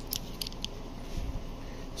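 Metal-on-metal clicks from a telescoping steel breaker bar handled in the hand, a few quick light clicks in the first half second, then a soft low thump a little past a second in.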